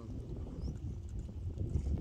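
Wind rumbling on the microphone, with light sloshing of water around people standing waist-deep in a pond.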